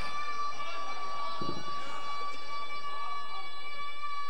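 A steady, high-pitched howl holding one pitch, typical of microphone feedback through a public-address system, with faint voices beneath it.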